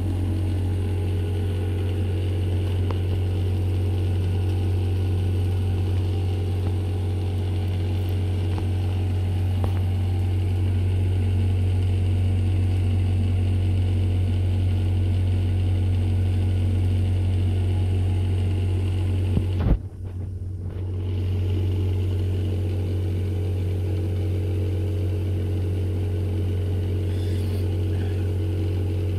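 A steady low hum with a ladder of evenly spaced tones above it. It breaks off for about a second some twenty seconds in, then resumes unchanged.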